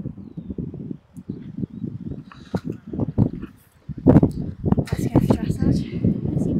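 Indistinct, muffled talking that grows louder about two-thirds of the way through.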